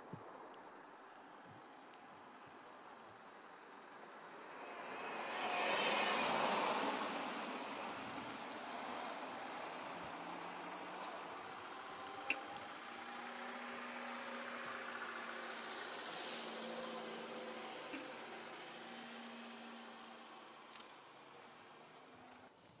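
A vehicle passes on the road, its noise swelling and fading over about four seconds. After it comes a steady low hum, with a sharp click about halfway through.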